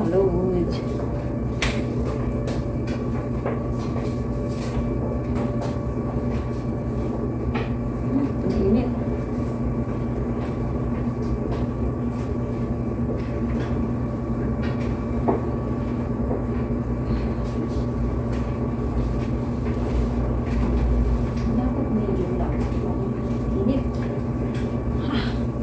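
Steady drone of laundry-room machines running, an even mechanical rumble with a constant electrical hum, broken by a few sharp knocks.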